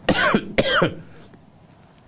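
A man coughs twice in quick succession, about half a second apart.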